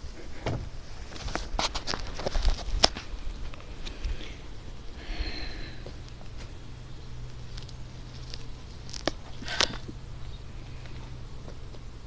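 Scattered clicks and knocks from handling a wooden beehive, with footsteps on dry ground, mostly in the first three seconds and again near the end. A faint steady low hum runs underneath from about four seconds in.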